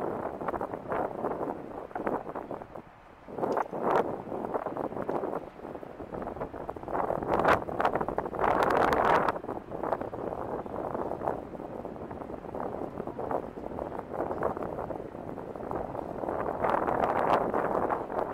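Wind buffeting the microphone of a handheld recording, with louder gusts about four seconds in, around the middle and near the end.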